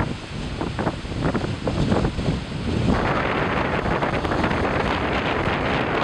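Storm wind blowing hard across the microphone over heavy waves breaking against a rock breakwater. The rushing is gusty for the first few seconds, then steadier.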